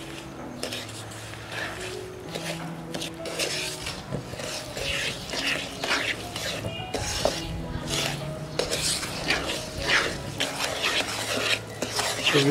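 Wooden spatula stirring and scraping granulated sugar into ghee-roasted gram flour (besan) in a pan: a continuous run of short, repeated scraping strokes against the pan.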